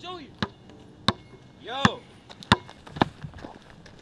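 Basketball dribbled on a concrete sidewalk: sharp single bounces about every two-thirds of a second, five of them.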